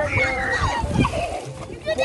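Children splashing and wading in shallow sea water, throwing water about, with children's voices calling out over the splashing.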